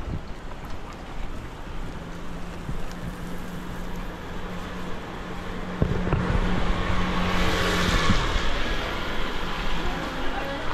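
A car driving past on a wet street: a low hum builds, then its tyres hiss on the wet asphalt, loudest about eight seconds in before fading.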